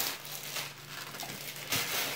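Thin plastic cake-mix bag crinkling and rustling as it is shaken and squeezed out over a mixing bowl, the rustle swelling briefly about half a second in and again near the end.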